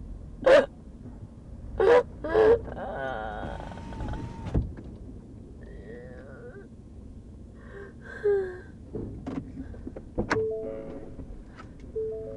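A woman's voice making non-word sounds in the back of a patrol car: a few short, loud cries in the first couple of seconds, then a long wavering pitched sound, and more brief vocal sounds later, over the car's cabin noise. Just after ten seconds there is a sharp click, followed by a few steady electronic-sounding tones.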